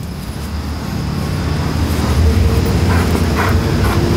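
Low rumble of a passing road vehicle, growing louder over the first two seconds or so and then holding steady.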